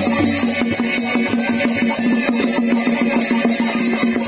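A nang talung (southern Thai shadow-puppet) ensemble playing a fast, steady beat: drum strokes, a small hand-held gong and small cymbals clinking.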